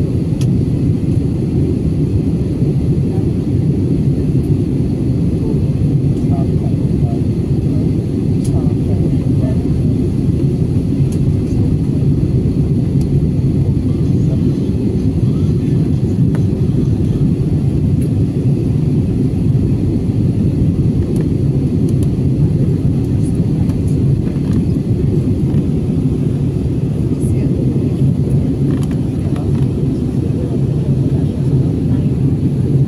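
Cabin noise of a jet airliner in flight: a steady low rumble of engines and rushing air that does not change.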